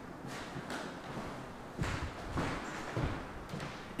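Footsteps on a wooden floor: several dull thuds a little over half a second apart, starting about two seconds in.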